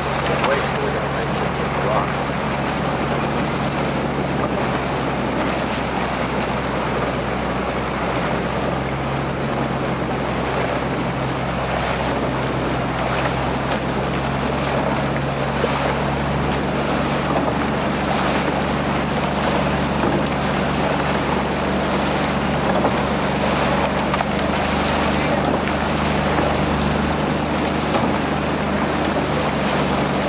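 Small motorboat engine running steadily at low speed, a constant low hum, over a steady rush of wind and water.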